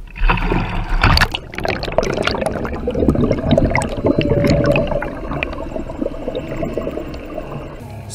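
A baited camera station splashes into the sea about a second in, followed by underwater bubbling and rushing water as it sinks, heard from a microphone below the surface.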